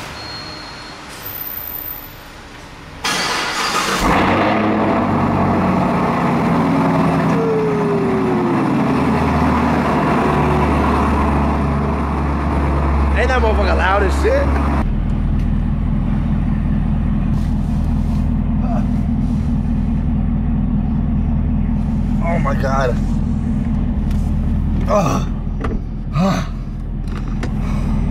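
Chevrolet Camaro's engine starting with a loud flare about three seconds in, then running at a raised fast idle that steps down to a lower, steady idle about halfway through.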